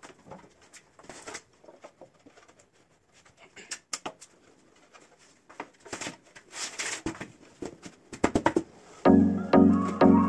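Scattered light knocks and clatter of flat-pack desk panels being lifted and set down on the floor. About nine seconds in, background music starts suddenly and is much louder than the handling.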